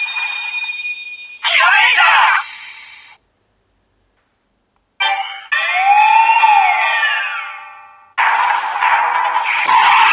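Kiramai Changer toy brace playing electronic sound effects and recorded voice clips through its small built-in speaker. It opens with a held synth tone and falling chimes, then a short voice line that fades out, then a pause of about two seconds. Next comes an effect that sweeps up and down, and a further voice line starts near the end.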